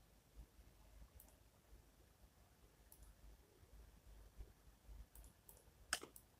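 Faint computer mouse clicks, a few scattered clicks with a slightly louder one near the end, over near silence.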